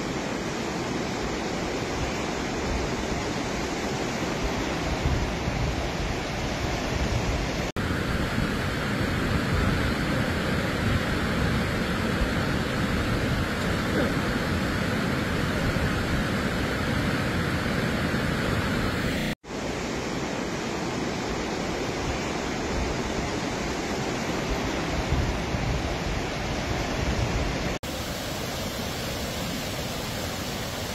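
Muddy floodwater and debris flow rushing through a village: a loud, steady rushing noise of churning water. It breaks off abruptly about 8, 19 and 28 seconds in, where the recording cuts between takes.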